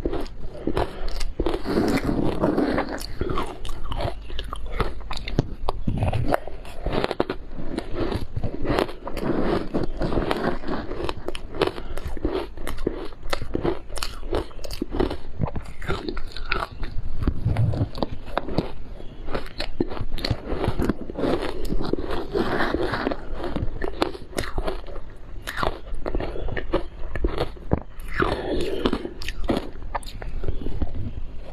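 Close-miked crunching and chewing of crushed ice coated in matcha and milk powder, eaten by the spoonful: a dense, continuous crackle of ice breaking between the teeth.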